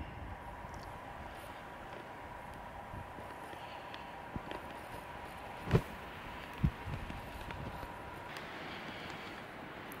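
Quiet mountaintop background: a faint steady hiss with a faint thin high hum that stops about eight seconds in. Two brief low knocks come around the middle.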